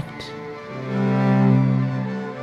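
Slow cello music: sustained bowed notes, with a deeper note swelling in under a second in and holding.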